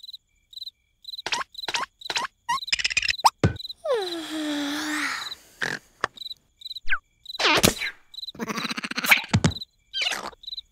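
Crickets chirping in an even rhythm against cartoon character vocal sounds: short squeaky noises, a long sound falling in pitch about four seconds in, then a buzzing snore near the end as the larva falls asleep.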